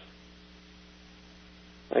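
Steady electrical mains hum with a faint even hiss, unchanging throughout; a voice begins right at the very end.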